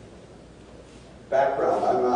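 Quiet room tone, then about 1.3 s in a man's loud voice starts with drawn-out, held tones.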